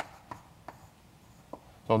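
Chalk on a blackboard: a few short, sharp taps as symbols are written, spaced irregularly. A man's voice starts speaking right at the end.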